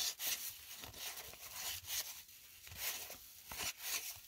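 Cardboard baseball cards sliding and rubbing against each other as a hand-held stack is flipped through one card at a time: a series of short, irregular scraping swishes.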